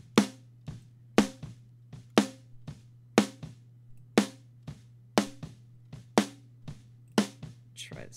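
Soloed snare-top microphone track of a recorded drum kit playing back while a high-pass EQ is set on it: a sharp snare hit about once a second, with quieter bleed hits from the rest of the kit in between. A faint steady low hum runs underneath.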